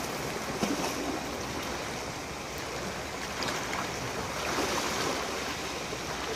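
Small sea waves washing over a pebble shore, with water splashing around a person's legs as he wades in.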